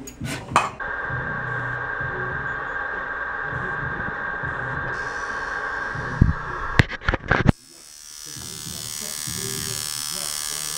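Coil tattoo machine buzzing steadily. A few knocks of handling come about two-thirds in, then the sound drops out suddenly, and the buzz fades back in as the needle works on skin.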